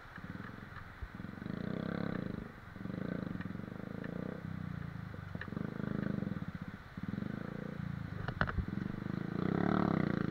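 Motorcycle engine revved in repeated surges of a second or so each, under load as the bike is worked through a rocky stream crossing. A short cluster of sharp knocks comes about eight seconds in.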